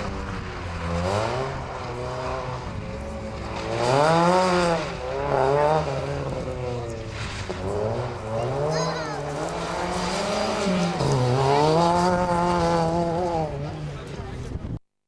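A competition Opel Astra F hatchback driven hard round a tight asphalt course: its engine revs rise and fall again and again as it accelerates, lifts and accelerates between turns. A brief high tyre squeal about nine seconds in.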